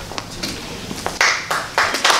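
Scattered hand claps from a seated audience, a few at first, then thicker from about halfway, building into applause near the end.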